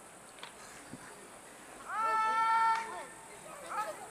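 A long, drawn-out shouted word of parade-ground drill command, rising into a single held pitch for about a second. A second, shorter shouted command follows near the end.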